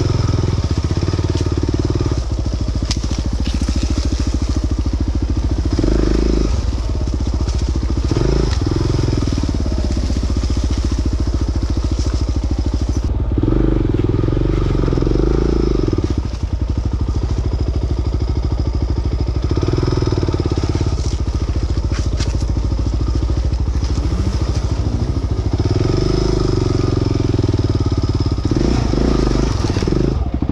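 Off-road dirt bike engine running under load on a rough trail, its revs rising and falling continually with the throttle. A few short knocks come from the bike over rough ground.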